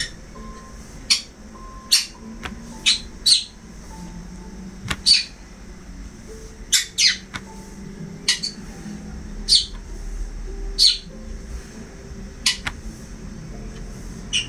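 A bird chirping again and again: about eleven short, sharp, falling chirps spaced irregularly, roughly one every second or so.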